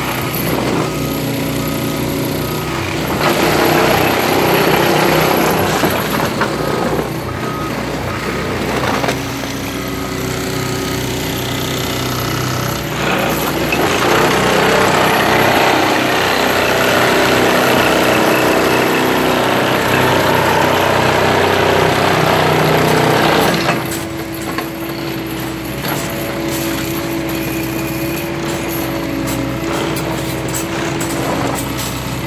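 Hydrocal III hydraulic ballast tamping unit working, its vibrating tines driving and squeezing into the track ballast with a loud jackhammer-like rattle, over a steady engine drone from its central power unit. The rattle comes in two long stretches, a short one a few seconds in and a longer one from about halfway until shortly before the end.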